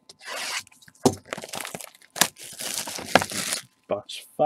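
Gloved hands tearing open the plastic-wrapped cardboard box of a trading-card pack, with irregular tearing and crinkling and a few sharp snaps.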